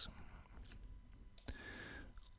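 Faint click of a computer mouse about one and a half seconds in, over quiet room tone.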